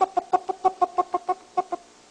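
A man's voice making a rapid run of short, identical staccato sounds at one steady pitch, about six a second, stopping shortly before the end.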